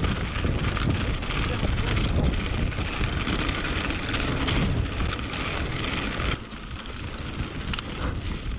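Mountain bike rolling fast down a gravel road, its tyres crunching over loose gravel and the frame rattling, with wind buffeting the action-camera microphone. The noise drops suddenly a little after six seconds in.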